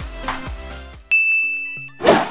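Background music fades out, then a single high ringing 'ding' chime sound effect starts sharply about a second in and dies away over most of a second.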